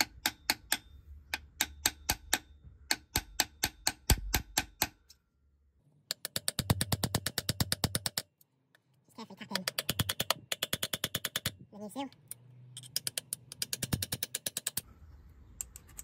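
Sharp metal taps from a hammer on a drift, seating a new PTFE-lined rear main crankshaft oil seal into its carrier through the old seal placed over it to protect the new one. Single taps at first, then three quick runs of rapid taps.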